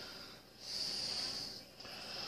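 A soft breath, a faint hiss lasting about a second in the middle, over quiet room tone.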